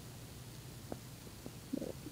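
Quiet background with a faint steady low hum and two light clicks, about a second and a half second in. A single short spoken word comes near the end.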